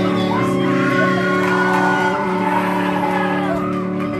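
Live rock band playing, with distorted electric guitars, electric bass and drums: steady held chords with a sliding high melody line over them.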